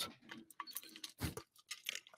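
A person sipping a drink close to a microphone: faint, irregular little mouth clicks and smacks, with a slightly fuller sound about a second in.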